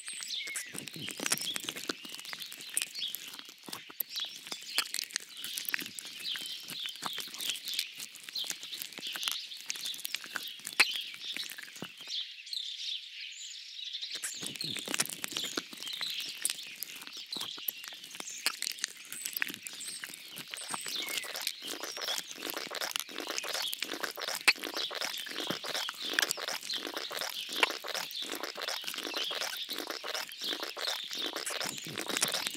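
Small birds chirping and singing, mixed with a dense, continuous crackle of sharp clicks. The crackle and lower sounds stop for about two seconds near the middle.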